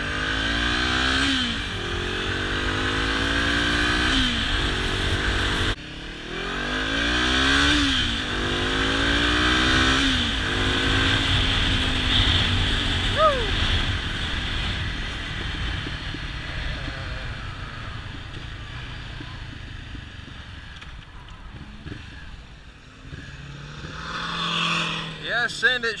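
Honda CB500F's 471cc parallel-twin engine accelerating hard through the gears. The revs climb and drop back at each upshift several times, then the engine eases off and settles to a lower, steadier drone as the bike slows. Wind rumbles throughout.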